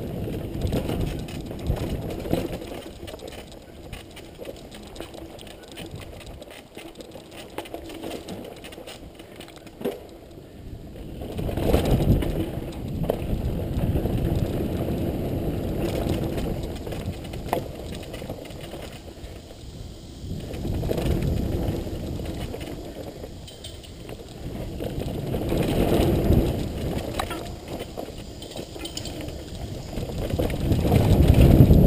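Mountain bike riding down a rough, rocky dirt trail: tyres rolling over dirt and stones and the bike rattling, under a low rumble of wind on the microphone that swells several times as speed picks up.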